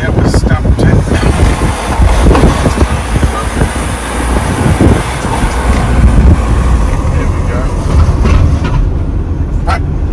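Road and wind noise inside a moving van's cabin: a steady low rumble of tyres and engine with a hiss of air over it as the van drives along.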